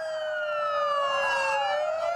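Several emergency-vehicle sirens wailing at once, their pitches gliding slowly down and up across one another.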